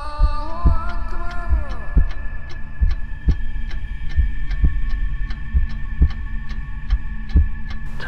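Heartbeat sound effect: a regular, steady beat of low thuds over a sustained hum. A higher drone slides and fades out in the first two seconds.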